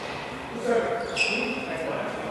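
A sports shoe sole squeaking on the badminton court mat: one short, high-pitched squeal about a second in, with a player's voice just before it.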